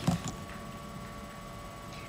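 Quiet room tone with a steady faint electrical hum. There is a brief soft knock of handling right at the start.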